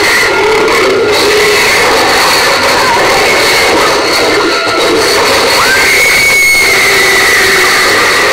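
Action-film fight-scene soundtrack, music and effects together, played loud through an LED TV's built-in speakers as a dense, unbroken wall of sound.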